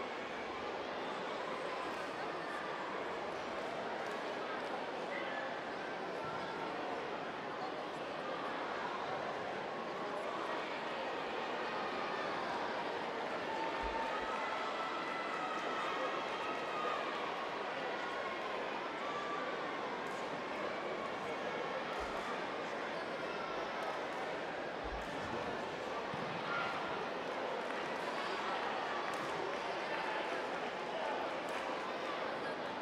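Indoor sports-hall ambience: steady, indistinct chatter of many voices, with a few soft thumps.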